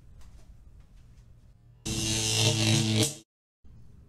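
A loud, harsh buzzer sounding for about a second and a half, starting about two seconds in and cutting off abruptly.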